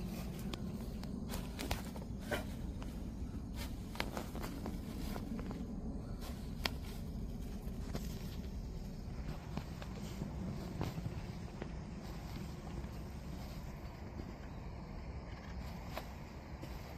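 Scattered sharp clicks, scrapes and rustles of hand transplanting: corn seedlings pulled from a plastic plug tray and a hand-held seedling transplanter jabbed into plastic mulch, with footsteps on soil. A steady low rumble runs underneath.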